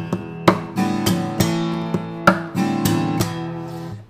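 Takamine acoustic guitar played in a percussive strumming pattern: strummed chords broken up by sharp thumb hits and slaps on the strings, about ten strokes in an even rhythm, the chords ringing between them.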